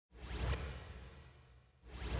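A whoosh sound effect that swells to a peak about half a second in, then fades away over the next second; another swell begins near the end.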